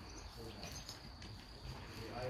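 Faint sheep-barn ambience: a steady high-pitched tone runs throughout, with soft scattered rustles of sheep shifting on the straw.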